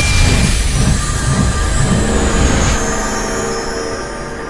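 A logo-animation sound effect: a sudden loud rush of noise with a deep pulsing rumble, giving way about three seconds in to a held ringing tone that fades out.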